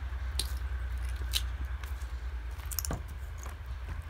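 Handling noise on a handheld camera: a low steady rumble with a few short rustles and clicks as a hand works at a boarded-up wooden cabin door.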